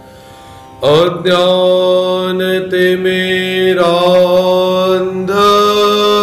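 A man chanting a slow, melodic invocation in long held notes over a steady drone. After a quiet breath, a new phrase begins about a second in, the voice gliding up into it, with a brief break near the end.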